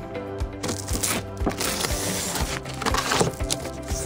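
Background music with a steady beat; over it, a blade slitting the packing tape along the top seam of a cardboard box, a rasping scrape lasting about two seconds from about half a second in.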